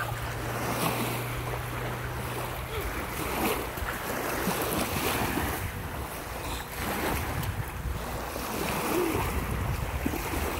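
Small waves lapping and washing over a shallow sandy lake shore, with wind buffeting the microphone.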